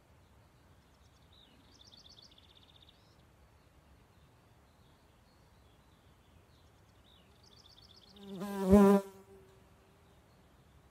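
A flying insect buzzes loudly past the microphone for about a second near the end, swelling up to a click at its loudest and then falling away. Earlier, faint high bird trills sound twice.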